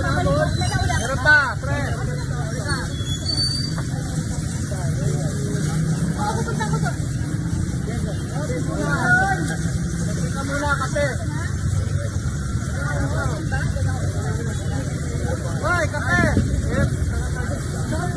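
Several people talking over one another above a steady low rumble of street traffic, with a brief louder knock about a second in.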